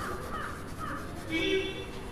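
A crow cawing, loudest in a short harsh call about a second and a half in, over the faint scratch of chalk writing on a blackboard.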